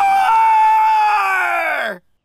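A person's long, loud scream, held on one high pitch, sliding down in pitch near the end and cutting off abruptly.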